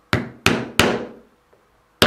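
A mallet striking a small 3 mm pricking iron three times in quick succession, about a third of a second apart, driving its prongs through glued layers of leather to punch stitch holes.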